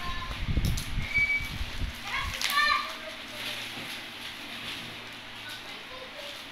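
A child's high-pitched voice calling out briefly, loudest about two and a half seconds in, over low rumbling bumps of handling noise in the first two seconds.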